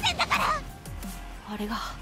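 Dubbed-over anime dialogue: a girl's high-pitched, strained voice delivering a line over background music. A second, lower voice starts speaking near the end.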